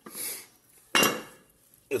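Metal clank of a rusty drill-press table and its collar bracket being handled: a light scrape, then one sharp knock about a second in that rings briefly.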